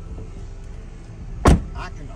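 A pickup truck's rear door shutting with a single sharp thump about one and a half seconds in, over a steady low hum.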